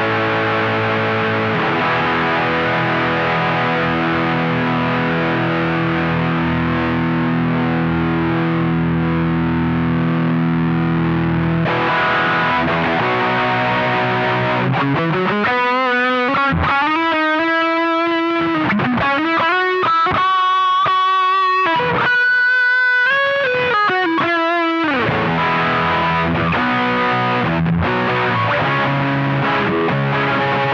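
Fender Telecaster Deluxe electric guitar played through an LY Rock dual-channel overdrive pedal, a clone of the Duellist. It plays sustained distorted chords at first, then switches about halfway to a single-note lead with string bends and vibrato, and returns to chords near the end.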